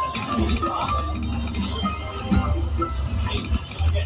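Video slot machine's electronic music and chiming sound effects while its reels spin, with a low pulsing beat under quick bright chimes.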